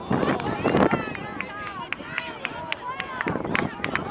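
Several voices shouting and calling over one another across a football pitch during play, with frequent short, sharp clicks.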